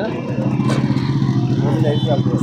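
A motor vehicle engine running at a steady, even pitch, coming in just after the start, with faint voices over it.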